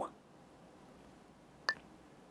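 Near silence, then a single short electronic beep about three-quarters of the way through, as the lesson moves on to the next word card.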